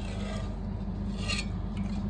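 A steady low hum, with a short scrape about one and a half seconds in.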